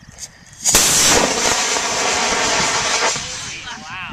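Model rocket motor igniting and launching the rocket off its pad: a sudden loud rushing noise about a second in that lasts a couple of seconds, then fades as the rocket climbs.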